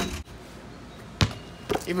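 A basketball hits once with a single sharp, heavy thump a little over a second in, after a brief click at the very start.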